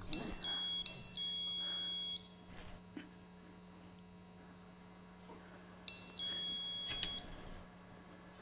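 Care-home emergency pull-cord call alarm sounding after the cord is pulled: a high electronic chime stepping between a few pitches, heard once for about two seconds at the start and again for about a second and a half near the end.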